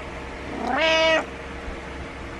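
Domestic cat giving one meow that rises in pitch, holds briefly and cuts off sharply: an attention-seeking call to get its owner out of bed.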